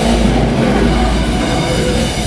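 Live death metal band playing: heavily distorted guitars and bass with drums, loud and dense, with a deep sustained low end.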